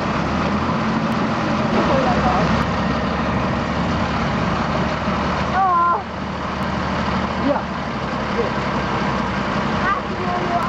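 Diesel engine of a Mercedes-Benz Unimog truck running in a steady low drone as it creeps through a muddy water crossing. A short shout cuts in about halfway through.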